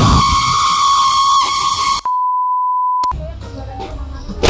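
Jump-scare sound effect edited in: a loud, harsh shriek with a steady beep tone running through it for about two seconds, then the beep tone alone for about a second, cut off suddenly.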